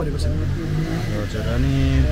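A low motor-vehicle engine rumble runs under a man's speech, rising a little near the end.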